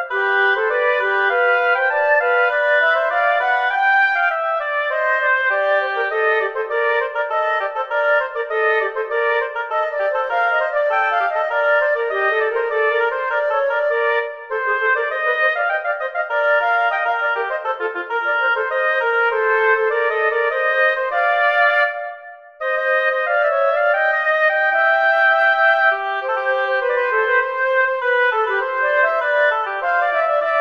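Flute and oboe duet played back from the score in MuseScore: brisk, fast-moving lines in canon, with one part echoing the other. About two-thirds of the way through, the music slows to a held note and breaks off briefly, then resumes at tempo.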